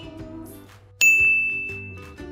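A single bright bell-like ding, a chime sound effect, struck about a second in and ringing out as it fades, over soft background music.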